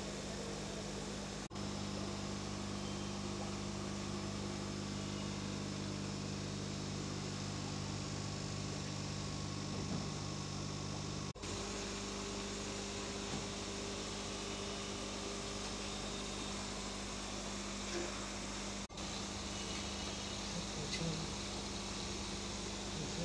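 Steady electrical hum of aquarium air pumps and filters, with an even hiss behind it. The hum drops out briefly and changes its tone three times: about a second and a half in, about halfway through, and a few seconds before the end.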